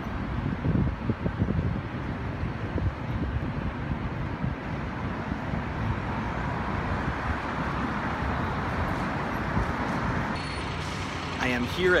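City street traffic: a steady rumble of passing vehicles, with a louder one swelling through the middle and fading near the end.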